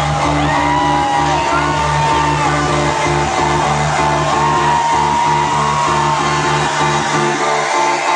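Loud house music from a club sound system with a pulsing bass beat and a gliding melody line. The bass drops out about seven seconds in.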